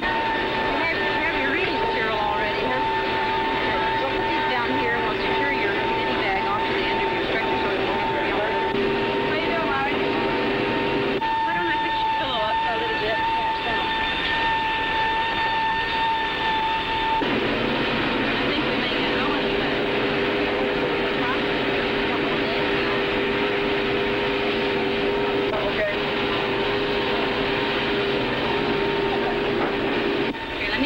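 Steady whine and rumble of aircraft engines heard inside the cabin, with indistinct voices underneath. The pitch of the whine shifts abruptly about 11 seconds in and again about 17 seconds in.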